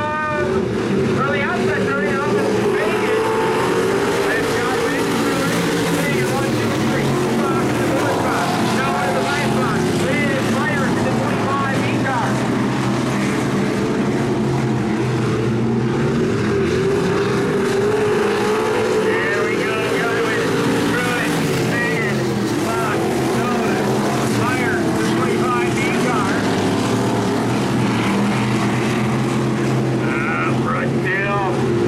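Several dirt-track stock car engines running together as the cars circle the oval, their pitch rising and falling as they speed up and back off.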